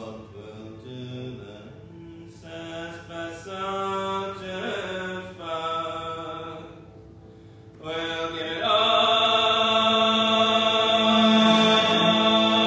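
Accordion and bowed cello playing slow, held, drone-like chords. The notes are quieter and broken at first, then swell into a loud, dense sustained chord about eight and a half seconds in.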